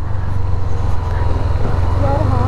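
Honda CB300F's single-cylinder engine running at a steady cruising speed, a continuous low hum, with the hiss of its tyres throwing spray off the wet road.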